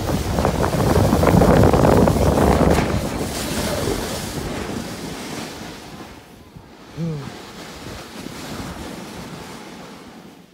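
Wind rushing over the phone's microphone and the snow tube hissing over packed snow as it slides downhill, loud at first and fading as the tube slows to a stop. About seven seconds in, a brief falling voice call.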